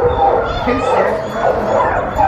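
Several caged dogs barking and yipping over one another.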